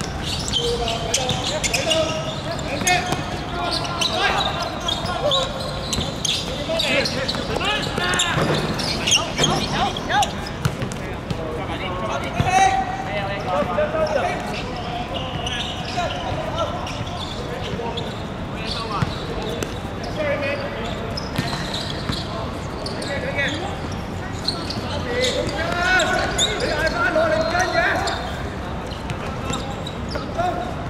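Footballers shouting and calling to each other across an outdoor court, with repeated thuds of the ball being kicked and bouncing on the hard playing surface.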